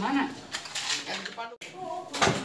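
A metal-bladed hoe scraping and knocking through wet landslide mud and debris on a hard floor, in repeated strokes with metallic clinks.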